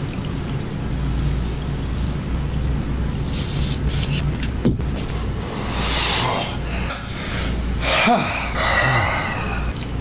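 Glass water bong bubbling steadily as smoke is drawn through the water, then a sharp click about halfway in, followed by loud breathy exhales and gasping breaths.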